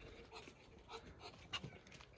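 Faint, scattered soft sounds of white Muscovy ducks foraging, pecking and rooting for worms in loose soil and leaf litter.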